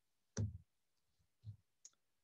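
A few faint clicks in a pause between speech: a sharper one about half a second in, then a soft low thump and a tiny click near the end.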